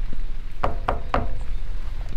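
Knuckles knocking on a front door: three quick raps, about a quarter second apart.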